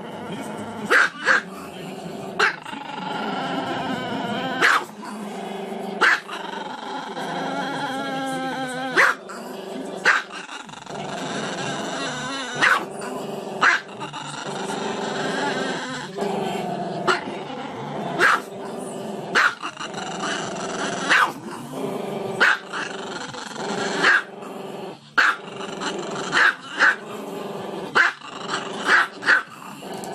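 A small dog howling with its muzzle raised: long, wavering howls broken every second or two by short, sharp barks.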